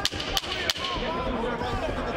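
Three sharp wooden knocks about a third of a second apart: the timekeeper's clapper striking the ring apron to signal ten seconds left in the round. Arena voices murmur after it.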